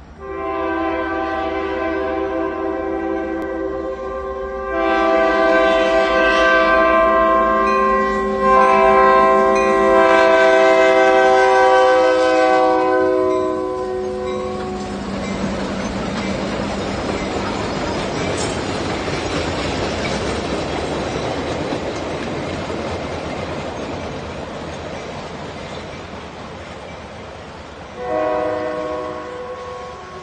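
A diesel locomotive's multi-tone air horn sounds three long blasts over the first fourteen seconds. Then the train rolls past with a steady noise of wheels on the rails, including the towed 2-8-4 steam locomotive, which is dead with no exhaust beat. A short horn blast comes near the end.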